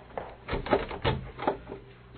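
Radio-drama sound effect of a wooden door being handled: several light knocks and clatters at uneven spacing, about every half second.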